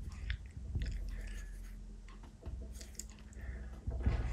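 A bristle brush dabbing and scraping thick oil paint on canvas, a run of short scratchy crackles, with a low rumble underneath.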